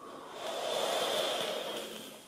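A person's long breath out close to the microphone, swelling and then fading over about two seconds.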